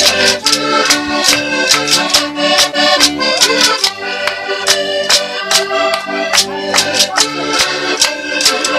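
Button accordion playing a lively tune over a steady beat of sharp percussive strokes, about four a second.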